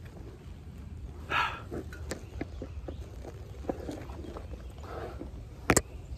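Mountain bike on a dry dirt trail: a steady low rumble with scattered clicks and rattles, and one sharp knock near the end.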